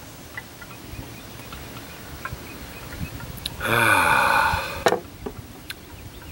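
A man's long breathy sigh, voiced and falling in pitch, lasting just over a second a little past halfway through, with a short click right after it. It is a sigh of appreciation at the roasty aroma of a freshly poured stout. Otherwise only a faint background with a few small ticks.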